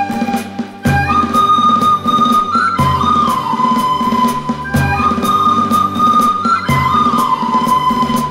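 A recorder ensemble playing a slow melody in unison, holding long notes in phrases of about two seconds, accompanied by acoustic guitar, keyboard and a drum kit keeping a steady beat.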